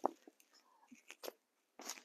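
A few faint, short clicks and a brief rustle near the end as gloved hands work plastic mesh pond netting loose among the edging stones.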